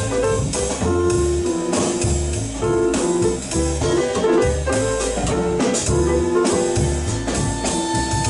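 Live jazz quartet playing a bluesy tune: bowed violin playing the lead line over grand piano, double bass and a drum kit with cymbals, with a steady beat.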